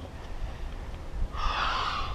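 A man's forceful exhale during a jumping exercise: one breathy rush lasting under a second, beginning a little past halfway, the hard breathing of exertion.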